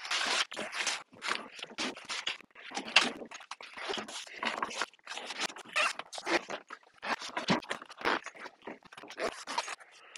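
Heavy padded fabric cover rustling and scraping as it is pulled and worked down over a plastic-cased portable compressor fridge, in many short irregular bursts.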